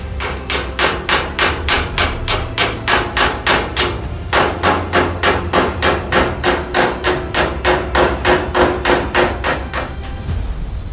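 Hammer blows on sheet-metal bodywork in a steady, even rhythm of about three strikes a second, over a steady low hum.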